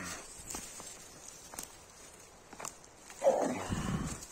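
Dry dead twigs and bracken rustling and crackling as a hand pushes through them, with scattered small snaps and a louder burst of crackling near the end.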